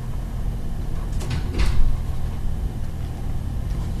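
A steady low hum in the background, with two faint brief soft sounds about a second and a half in.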